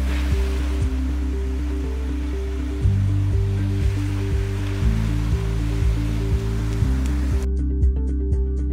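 Background music with a steady beat over the rush of ocean surf breaking and washing up a sand beach. The surf sound cuts off suddenly near the end, leaving only the music.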